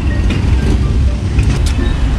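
A steady low rumble throughout, with a few light clicks about one and a half seconds in as green plastic clothes hangers are handled.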